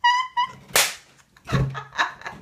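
A short high-pitched squeal of laughter, then a single sharp slap about three-quarters of a second in, followed by more breathy bursts of laughter near the end.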